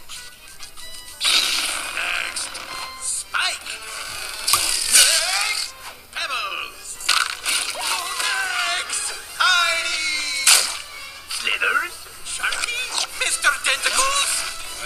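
Animated film soundtrack: cartoon creature calls and squeals with slapstick effects, including sharp cracks about four and a half and ten and a half seconds in, over background music.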